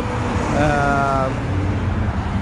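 Road traffic at an intersection: steady engine rumble and tyre noise from passing cars and trucks. A brief held tone sounds about half a second in and lasts under a second.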